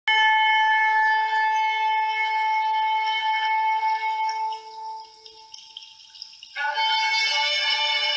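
A shofar (ram's horn) sounds one long, steady note that fades out after about five seconds. After a short gap, a second, brighter held tone starts suddenly near the end.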